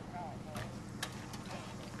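Car engines idling with a low, steady hum, under faint distant voices and a couple of light clicks.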